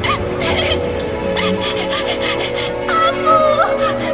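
Soundtrack with sustained music notes under a run of short breathy noise bursts and a few brief wavering cries near the end: a young girl sobbing.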